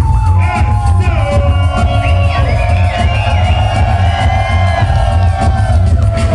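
Live hip-hop music played loud over a club PA: a heavy, even bass beat under a melodic line that bends in pitch and holds a long, wavering note through the middle.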